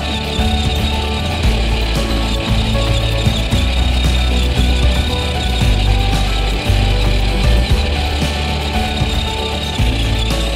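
Background music with a steady bass line, laid over the driving footage.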